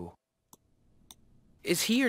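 Two faint computer-mouse clicks about half a second apart, on the on-screen audio player as the listening recording is stopped. A short burst of speech follows near the end.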